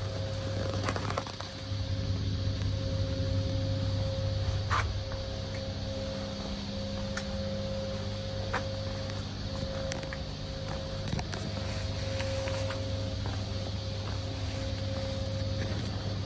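A steady low hum with a few faint clicks and scrapes, the background sound of a large indoor hall.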